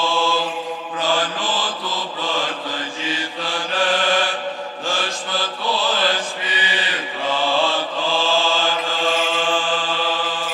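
Orthodox church chant: voices singing a slow melody over a steady held drone (ison).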